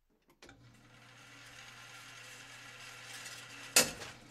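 Electric target retriever motor running as the paper target travels in along its overhead track at an indoor range, a steady hum that grows slowly louder, with one sharp knock near the end as the carrier stops.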